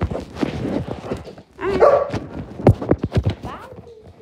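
A dog barking once about two seconds in, amid short knocks and rustles; faint rising whine-like sounds follow near the end.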